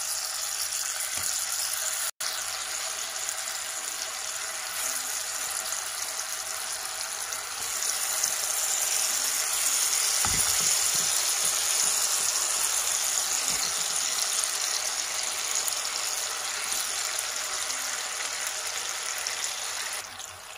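Butter and sugar syrup sizzling and bubbling in a frying pan as peach slices are laid into it, a steady hiss that grows louder about halfway through.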